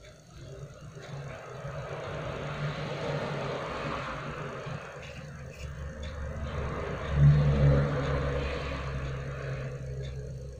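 A motor vehicle engine heard passing: a low rumble with a noisy haze that builds from about a second in, is loudest around seven seconds in, then eases off a little.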